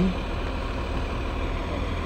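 Steady low rumble of heavy trucks idling in stopped traffic, with an even hiss over it.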